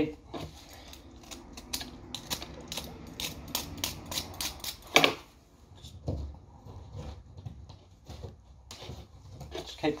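Knife blade carving and scraping at a piece of gyprock plasterboard, a run of short scratchy strokes and clicks as it is trimmed to fit a hole, with one sharper knock about five seconds in.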